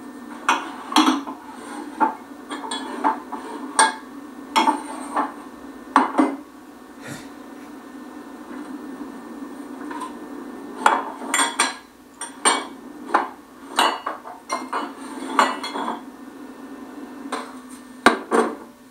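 Mugs and glassware being handled in a kitchen, with irregular knocks and clinks as they are taken out and set down. The knocks come in two clusters with a lull in the middle, over a steady low hum.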